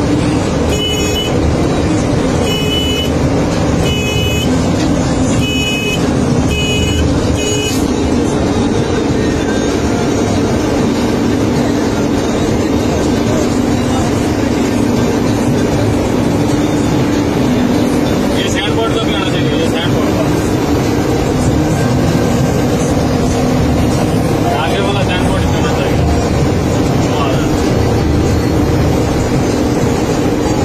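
Steady drone of a mobile crane's engine and road noise heard inside the cab while driving at highway speed. Early on, a run of about six short, high-pitched tones.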